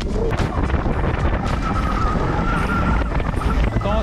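Mountain bike riding down a dirt forest trail: tyres rumbling over the ground and the bike rattling and clicking over bumps, with wind on the microphone.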